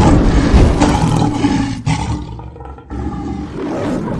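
A lion roar sound effect, loudest over the first two seconds and then fading, with a weaker swell near the end.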